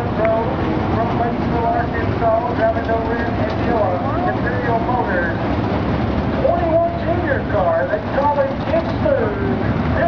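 Dirt late model race cars' engines running as the field circles the track, a steady low rumble, with people's voices talking over it.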